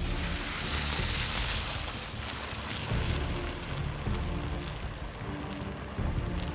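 Hot oil in a propane turkey fryer boiling over with a sizzling hiss as a partially frozen turkey goes in, strongest for the first couple of seconds and then easing off. Music plays quietly underneath.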